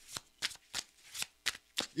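Tarot cards being shuffled by hand: a run of short, irregular card snaps and taps.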